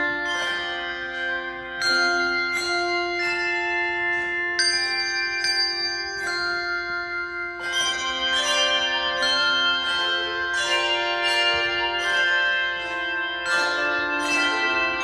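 Instrumental music made of struck notes: a flowing melody of notes that start sharply and ring away, with several sounding at once over held lower notes.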